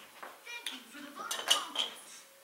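Small metal knives clinking and knocking as they are handled on a tabletop: several light, ringing clinks, the sharpest about one and a half seconds in.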